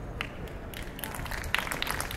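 Audience applause: scattered hand claps start a little under a second in and thicken into light, steady clapping.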